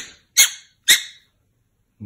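Black-billed magpie giving two short, harsh calls about half a second apart, agitated.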